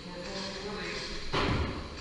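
A single loud thump about one and a half seconds in, with a short tail, over indistinct voices.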